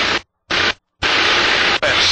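Light aircraft cockpit noise heard through the headset intercom: a loud steady hiss of engine and wind from the open microphone, cutting out to dead silence twice in the first second as the intercom's voice-activated squelch closes and reopens. A single spoken word comes near the end.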